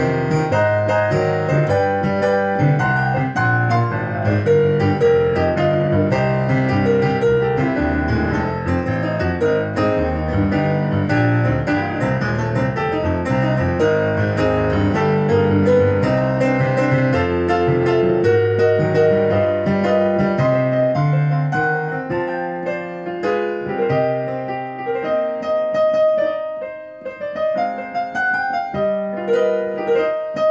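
Digital keyboard with a piano sound played two-handed in an instrumental break: a left-hand bass line under right-hand chords and runs. About two-thirds of the way through, the bass drops away and the playing thins out and briefly softens before picking up again.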